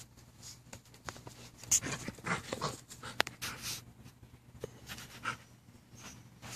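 A Rottweiler puppy and a larger black dog playing on grass, with dog panting and irregular scuffling. A busier burst of rustling comes about two to four seconds in, with two sharp clicks.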